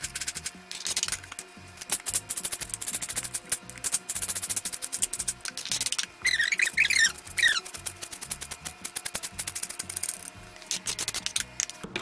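Rapid, dense knife chopping on a plastic cutting board, a fast run of clicks like a typewriter, under background music.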